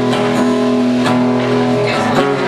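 Acoustic guitar strummed, a chord ringing on under a few separate strokes.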